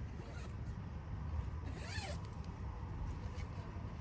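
Outdoor ambience: a steady low rumble, with one short rising-and-falling call about halfway through.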